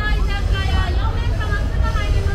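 Passersby talking close by on a busy pedestrian street, over a steady low rumble of city noise.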